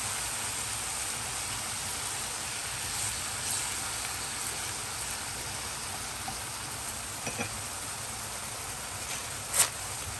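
Thin-sliced fatty beef and soy-and-mirin sauce sizzling steadily in a hot skillet, growing a little quieter over the seconds. A few light clicks come late on, and one sharper tap shortly before the end.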